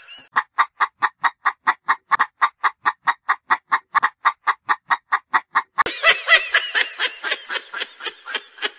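Cartoon chicken sound effect: a rapid, even series of clucks, about five a second, then a louder, busier stretch of wavering sound from about six seconds in.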